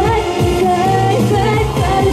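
Pop music with singing over a steady drum beat and bass.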